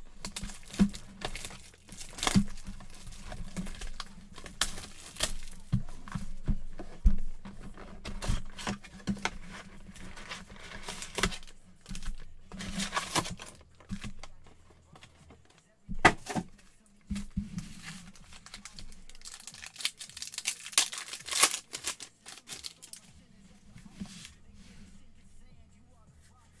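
Cardboard hobby box being torn open and its foil-wrapped trading card packs crinkled and ripped open by hand: irregular crackling and rustling with several longer tearing rushes, the loudest about two-thirds of the way through.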